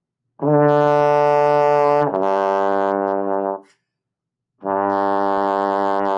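Trombone playing a lip slur. A held note slides smoothly down to a lower note without a break, changing partials with the lips and air while the slide stays in one position. The pair lasts about three seconds, and after a short pause a new low note starts near the end.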